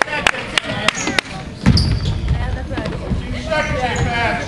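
Basketball dribbled on a hardwood gym floor: sharp bounces about three a second through the first second or so, then a heavier thud a little before the halfway point, with spectators' voices.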